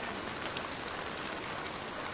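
A steady, even hiss with no voices.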